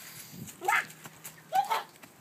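Chickens calling: two short squawks, about a second apart.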